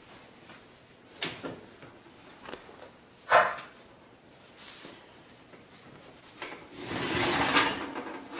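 Light knocks, then a sharper clunk about three seconds in as the oven door opens, then the metal oven rack sliding out on its runners with a scraping rattle for about a second near the end, a roasting pan sitting on it.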